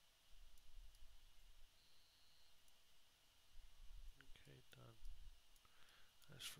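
Near silence: room tone with a few faint clicks and a faint short high tone about two seconds in. A brief low mumbled voice comes about four seconds in.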